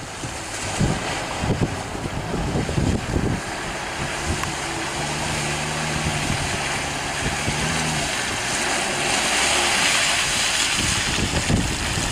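Toyota LandCruiser Troop Carrier driving through a muddy puddle: engine running with water splashing around the tyres, and wind buffeting the microphone. The sound grows slowly as the vehicle comes closer.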